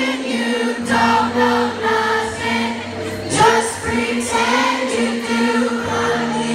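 Live pop-rock band playing with sung vocals, recorded from the audience on a phone: guitars, drums and keyboard under the singing, with many voices singing together.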